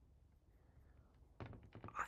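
Near silence: room tone with a faint low hum. Faint knock-like sounds come near the end, just before speech resumes.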